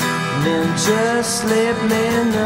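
Acoustic guitar strummed in a slow song, with a man's voice singing held, gliding notes over it.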